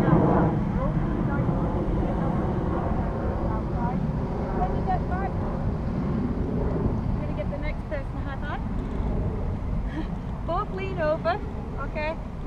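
Distant, indistinct voices over a steady low rumble, with the voices growing a little clearer near the end.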